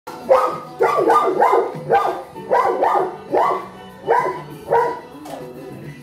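Young Cane Corso barking in short, repeated barks, about ten in five seconds, the last ones farther apart.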